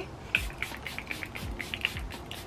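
Rapid spritzes of Charlotte Tilbury Airbrush setting spray misting the face, a quick run of short hisses several times a second, over soft lofi background music.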